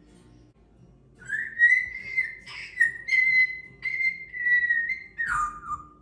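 African grey parrot whistling: a long whistle held near one pitch with a few short breaks, gliding down lower near the end.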